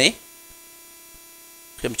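Steady electrical mains hum in a pause between spoken words, with a word ending just at the start and speech picking up again near the end.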